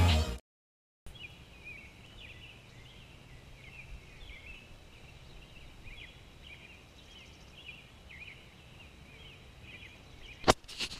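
Faint pre-dawn birdsong: many short, quick chirps from several birds, coming and going throughout over a low, steady background rumble.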